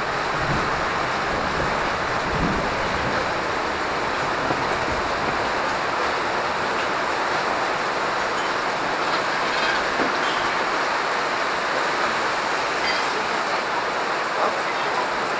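Heavy rain pouring down in a steady, loud rush, drumming on the canvas awning and parasols overhead.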